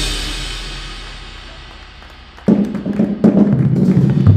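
Marching percussion ensemble: a loud ensemble hit rings out and fades away over about two and a half seconds, then the drums come in suddenly with a dense run of strokes and low, pitched bass-drum notes.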